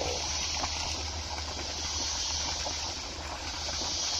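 Steady outdoor background noise: an even, high hiss over a low, constant hum, with a few faint ticks.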